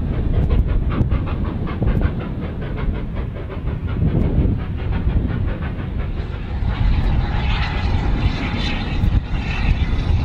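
Industrial steam locomotive working hard with a train, its exhaust beating quickly at about four to five chuffs a second over a heavy low rumble. About two-thirds of the way through, the beats blur into a brighter, steadier rush.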